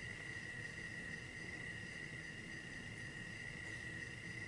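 A faint, steady high-pitched whine that holds one pitch without pulsing, over a low background hiss.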